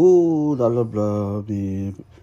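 A man's voice chanting in a few long, level notes, one after another.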